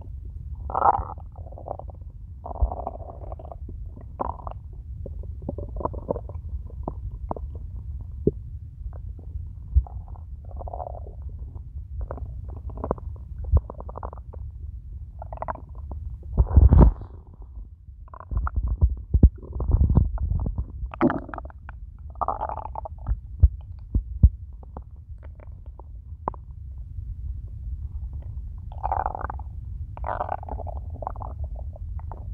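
A hungry human stomach growling: a steady low rumble under irregular gurgles that come and go every second or two, loudest about 17 and 20 seconds in.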